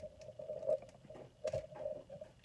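Handling noise: a few light clicks and knocks over a faint, steady hum, the loudest knocks about a third of the way in and again near three quarters of the way.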